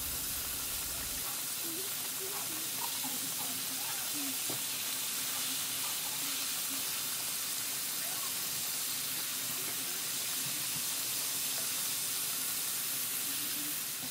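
Flour-coated tilapia pieces frying in hot vegetable oil in a pan: a steady sizzle that holds at one level throughout.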